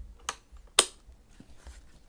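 Two sharp clicks, about half a second apart with the second louder, as the rugged laptop is handled and turned over in the hands.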